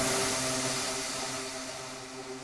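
A held electronic synth chord with a hissy wash, fading out slowly with no drums: the closing tail of the dance track.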